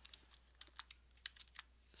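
Faint, irregular clicking of computer keyboard keys being typed.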